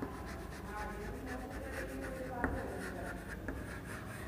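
Chalk writing on a chalkboard: a run of short scratching strokes, with one sharper tap about two and a half seconds in.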